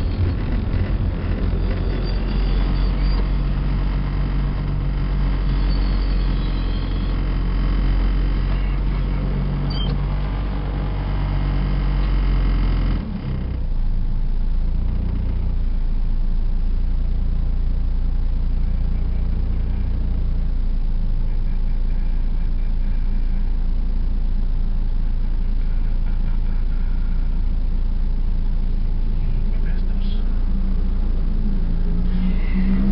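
Cabin noise inside a car driving in traffic: a steady engine and road rumble. Just under halfway through it changes suddenly to a duller, more muffled rumble with less hiss on top.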